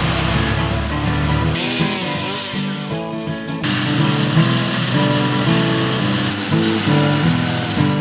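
Background music over the noise of tree-removal machinery: chainsaw, wood chipper and stump grinder running. The machine noise changes abruptly about one and a half and three and a half seconds in.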